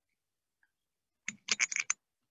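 Computer keyboard typing: a quick run of about six keystrokes, coming after a second of silence.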